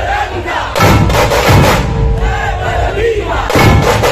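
Puneri dhol-tasha troupe playing, the big dhol barrel drums and tasha drums pounding under a crowd shouting and chanting. There are loud crashes about a second in and again near the end.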